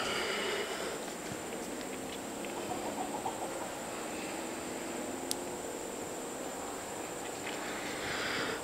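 Quiet room ambience: a steady faint hiss with a single small click about five seconds in.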